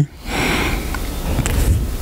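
A person breathing close to a handheld microphone: a soft, noisy rush of breath with a low rumble beneath it.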